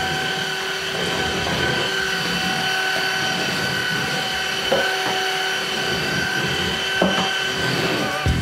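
PrettyCare W300 cordless stick vacuum running steadily over a hardwood floor: a high, even motor whine over the rush of suction, with a couple of light knocks about five and seven seconds in.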